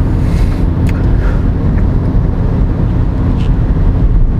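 Steady low engine and road rumble inside a Mini Countryman's cabin as it drives along.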